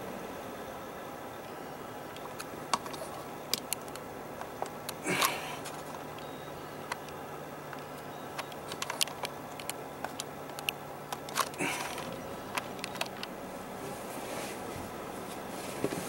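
Steady road noise inside a moving car, with a low engine hum in the middle stretch. Scattered sharp clicks and two brief rustles come from handling things in the cabin.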